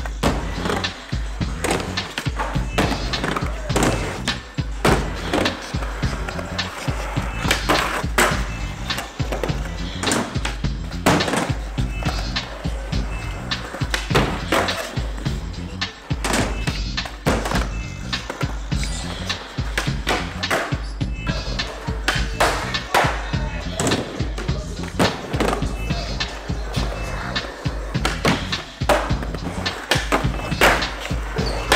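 Skateboards rolling over a concrete floor and ramp, with repeated sharp clacks and slaps of boards popping, landing and hitting a wooden box ledge, over continuous music.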